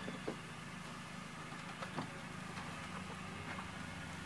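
A steady low machine hum, with two faint soft clicks, one shortly after the start and one about halfway.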